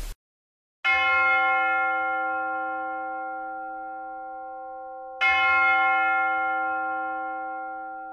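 A bell struck twice, about four seconds apart, each stroke ringing on and slowly fading.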